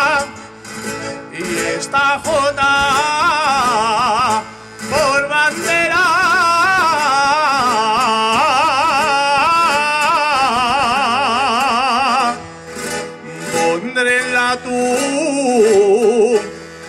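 A man singing a jota solo, holding long high notes with a wide, fast vibrato, accompanied by guitar. The voice breaks off briefly three times, near the start, about four and a half seconds in and around thirteen seconds, leaving the guitar.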